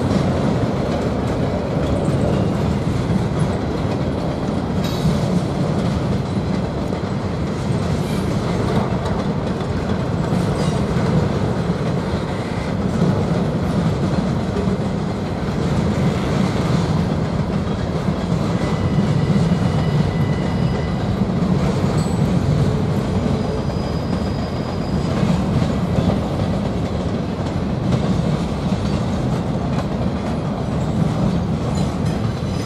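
Freight train cars rolling past at steady speed: a continuous low rumble of steel wheels on the rails, with a few brief faint high-pitched wheel squeals in the second half.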